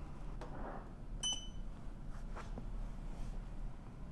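Upreign under-desk elliptical's control unit giving a single short, high-pitched electronic beep about a second in as it is switched on with its power button, with a few faint clicks and a low steady hum around it.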